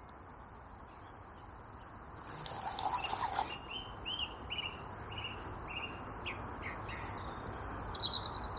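A small bird calling in a run of short repeated chirps, about two a second, that starts a couple of seconds in. Beneath it is a faint steady hiss of background noise.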